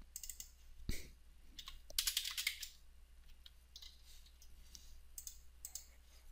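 Computer keyboard typing and mouse clicks in a few short, scattered bursts.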